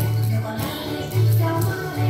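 Upbeat background music with a bass line in long, repeated notes and light percussion.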